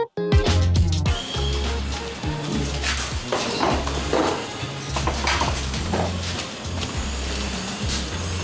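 Background music with a steady, repeating bass line, cutting in after a brief dropout at the very start, with a few short hissy noises mixed in around the middle.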